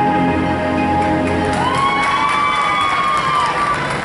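Arabic dance music stops partway through, and an audience cheers with one long high-pitched shout and some clapping.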